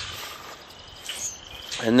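Insects trilling steadily at a high pitch, with a man's voice starting a word near the end.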